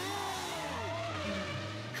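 Sound effects from a tokusatsu show's car-robot scene: a car engine hum with several gliding tones sliding up and down over it.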